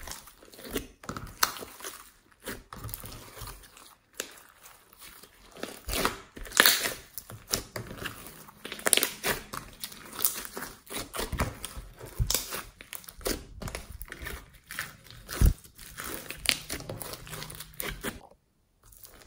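Hands kneading, squeezing and stretching a large mass of glossy slime mixed with small foam beads, making irregular sticky crackles and squelches.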